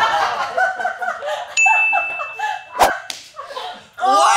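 Short voice-like sounds, then a high, steady, bell-like ding about one and a half seconds in that holds for about a second and a half. A sharp click comes near the end of the ding.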